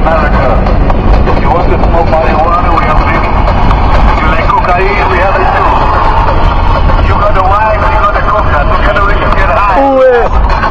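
Car cabin noise at motorway speed: a loud, steady low rumble of engine and tyres. People's voices run over it.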